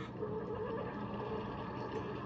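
Single-serve K-cup pod coffee maker humming with a wavering mid-pitched tone as it heats and pumps water, before the drink has started to pour.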